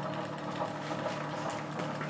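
Bedini monopole SSG energiser running: its magnet wheel spinning past the pulsed drive coil with a steady mechanical hum.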